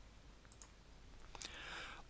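Faint computer mouse clicks, a couple about half a second in and another just before the middle, against near-silent room tone.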